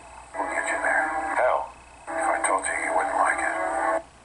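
A voice making two long, wavering vocal sounds without words, the first about a second and a half long and the second about two seconds.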